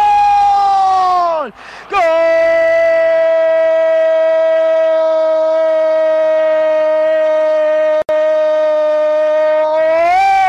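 A radio football commentator's drawn-out goal cry, 'Gooool', held on one high steady pitch: the first shout sags and breaks off about a second and a half in, and after a quick breath a second long held note runs on for about eight seconds. It signals that a goal has just been scored.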